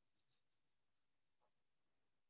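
Near silence: faint room tone, with a few faint soft clicks about a third of a second in.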